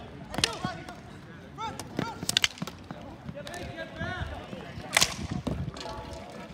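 Ball hockey sticks cracking against the ball and the sport-court tiles during play: a series of sharp smacks, the loudest about five seconds in.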